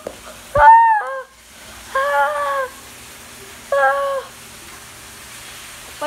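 Three short, high-pitched wordless calls about a second and a half apart, the first the loudest and opening with a sharp click, the others a little quieter.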